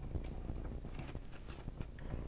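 Faint, scattered clicks and taps of a plastic transforming action figure being handled and turned in the hand.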